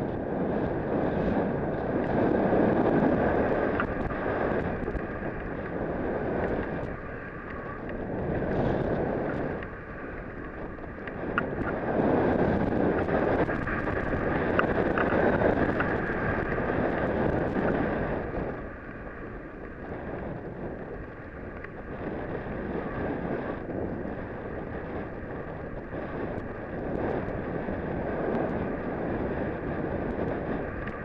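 Wind rushing over an action camera's microphone, mixed with the hiss of a rider sliding down through powder snow, swelling and easing in long surges every few seconds.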